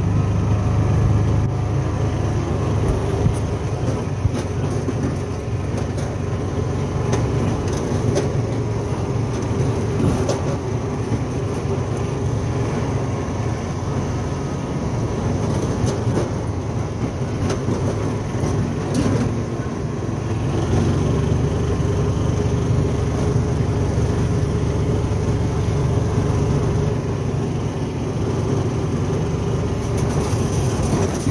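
John Deere Gator utility vehicle running and driving over gravel: a steady low engine drone with tyre noise and scattered small clicks and rattles.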